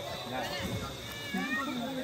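Quiet background chatter of several people, with a brief high-pitched gliding call about a second in.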